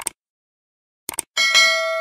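Subscribe-animation sound effects: a quick mouse double-click, another double-click about a second in, then a bright bell ding that rings on and slowly fades.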